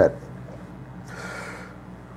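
A man's audible in-breath, a soft hiss lasting under a second, taken about a second in during a pause in talking, over a faint steady low hum.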